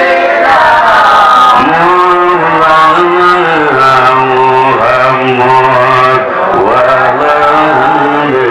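A man's voice singing an Islamic devotional chant in a melodic, drawn-out style, holding long notes with ornamented turns. The phrase breaks briefly about six seconds in and a new one begins.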